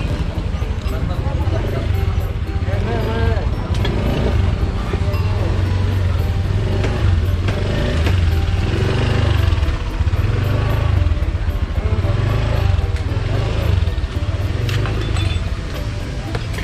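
Outdoor street-market bustle: people's voices in the background over a low, continuous rumble of passing traffic, with scattered light knocks.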